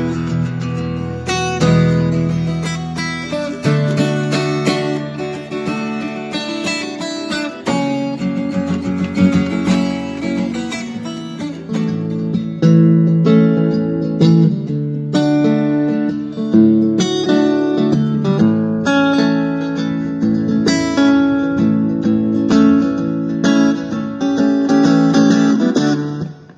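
Acoustic guitar playing an instrumental piece without singing: a steady run of plucked notes and chords over low bass notes.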